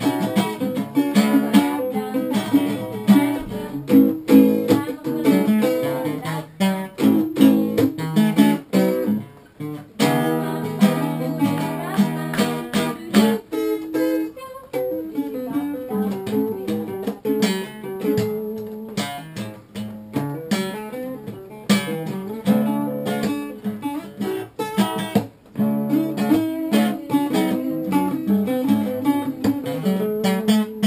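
Two acoustic guitars played together, strumming chords without singing.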